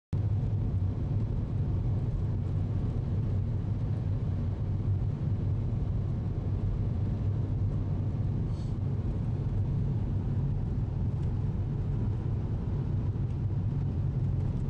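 Car being driven, heard from inside the cabin: a steady low rumble of engine and road noise.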